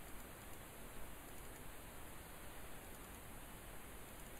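Faint, steady hiss of the recording's background noise: room tone with no distinct sound events.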